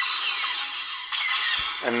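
Lightsaber blaster-deflect sound effects from a Proffieboard sound board through the hilt's small bass speaker: two sudden blasts about a second apart, each with a falling zap.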